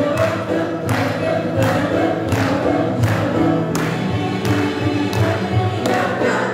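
A mixed choir singing a Turkish folk song (türkü) with a folk ensemble of oud, flute, bağlama and keyboard, over a steady drum beat about every three-quarters of a second.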